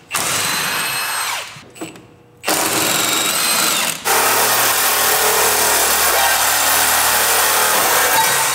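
Cordless reciprocating saw cutting metal on a car's underside. A short run winds down, and after a brief pause a longer cut starts. It spins down and restarts about four seconds in, then runs on steadily.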